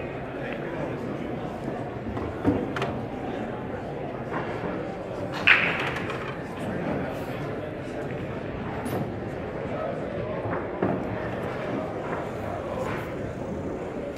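Steady murmur of many voices in a large hall full of pool tables, with a few sharp clicks of pool balls striking, the loudest about five and a half seconds in.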